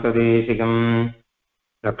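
A man chanting Sanskrit invocation verses in a steady recitation tone on a nearly level pitch. The chant stops about a second in, there is a gap of total silence, and it resumes just before the end.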